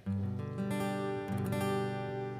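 Acoustic guitar strumming sustained chords, with a fresh strum about a second and a half in.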